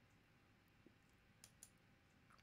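Near silence: faint room tone with three or four faint short clicks.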